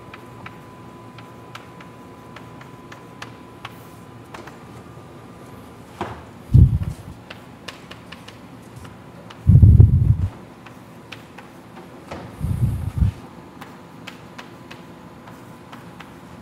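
Chalk writing on a blackboard, heard as light, irregular clicks and taps, with three louder dull low thumps spaced a few seconds apart in the second half.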